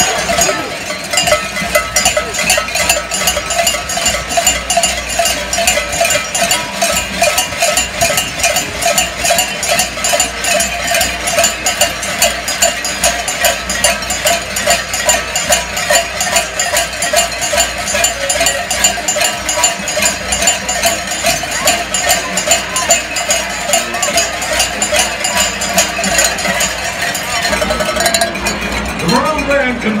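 A stadium crowd ringing many cowbells at once, a dense and continuous clanging that does not let up.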